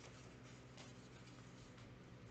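Near silence: a low steady hum, with faint rustles of paper being handled about a second in and again near the end.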